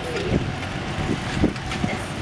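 Golf cart riding along a paved road: a steady low rumble of the cart with wind on the microphone and a few soft low knocks.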